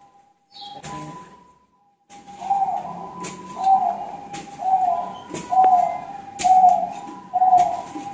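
A bird calling: after a quiet start, the same short pitched note repeats about once a second, around eight times.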